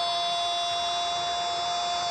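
A football commentator's long held goal shout, "gooool", sustained on one steady high note.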